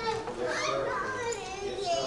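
A young child's voice talking in the room, quieter than the amplified preaching around it.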